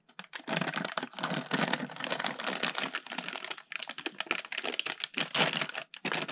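Thin plastic packaging bag crinkling in dense crackles as it is handled and pulled off a boxed water block, starting about half a second in.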